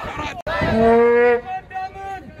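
A man's loud shouted call, drawn out on one steady pitch for most of a second, as in a protest chant, followed by shorter calls from other voices in the crowd.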